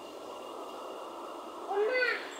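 A toddler's single short, high-pitched vocal squeal near the end, its pitch rising and then dropping, over steady background hiss.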